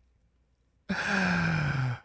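A man's long, breathy sigh with a falling pitch, beginning about a second in.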